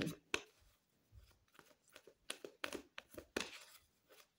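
A deck of tarot cards shuffled by hand: a run of soft flicks and snaps, sparse at first and busiest from about two seconds in.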